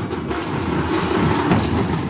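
A troupe of large barrel drums and other hand percussion played together at once, making a loud, dense, continuous din of overlapping strikes.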